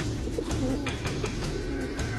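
Pigeons cooing, with a few sharp wing flaps, as two hen pigeons caged together fight.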